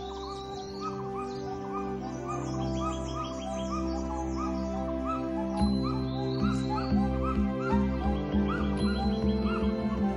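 Background music with held low notes, with many short bird calls repeating over it.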